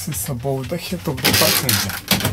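A person's voice briefly, then the plastic lid of a Scania truck cab's overhead storage locker is swung shut with a rattling clatter lasting under a second, about a second in.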